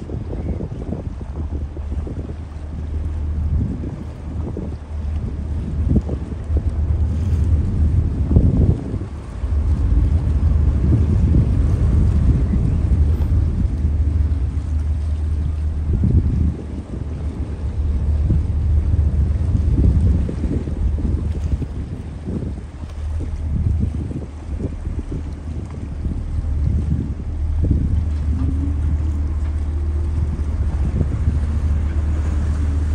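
Steady low drone of a lake passenger ship's engine as the ship comes alongside a landing pier, with wind buffeting the microphone in gusts over it. The sound gets louder about ten seconds in.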